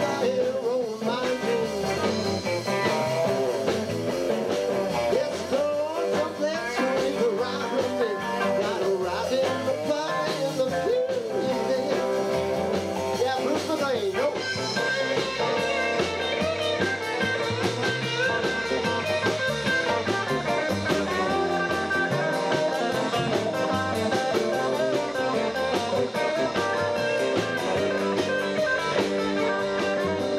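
Live blues-rock band playing: electric guitars over a drum kit, with a lead guitar bending notes through the first half and steadier held chords after about halfway.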